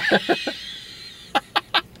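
Two men laughing hard: loud repeated bursts of laughter that die away within about a second, followed by a few short chuckles near the end.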